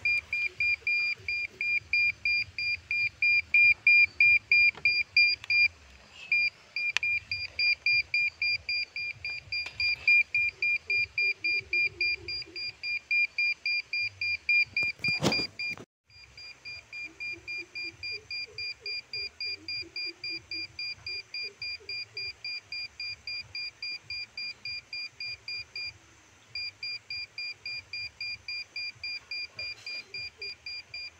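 Solid SF-810 PRO satellite meter beeping rapidly, about three high beeps a second, as it holds a locked signal from the Express 80°E satellite during dish alignment. One sharp knock about halfway through.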